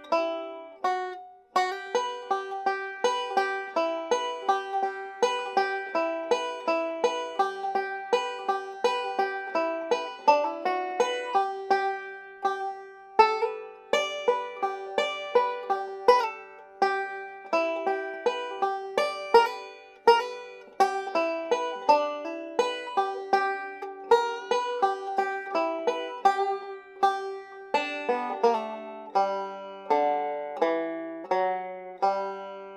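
Solo bluegrass banjo picked in fast, continuous three-finger rolls, a break played high up the neck.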